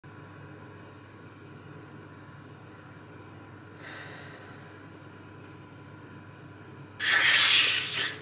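Quiet room hum with a person breathing: a soft breath about four seconds in, then a loud, heavy exhale lasting about a second near the end.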